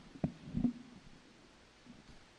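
A short sharp click, then a louder low thump just over half a second in.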